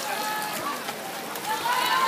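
Spectators at a swimming race yelling drawn-out, high-pitched shouts of encouragement at a swimmer. The shouts ease off mid-way and grow louder again near the end, over a steady hiss of background noise.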